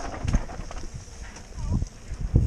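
Mountain bike rattling over a bumpy dirt singletrack: a run of irregular knocks and clatters.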